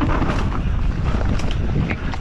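Wind buffeting the action-camera microphone as an enduro mountain bike descends fast over a rough, rocky trail, with the tyres and bike rattling over stones and sharp knocks now and then.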